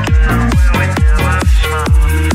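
Minimal techno track playing loud: a steady four-on-the-floor kick drum, each hit dropping in pitch, about twice a second over a sustained bass, with a bright gliding synth line above.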